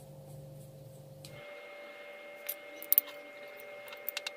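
Small hard parts of a plastic lamp holder and screwdriver being handled during wiring: a few sharp clicks, the loudest two close together about three seconds in.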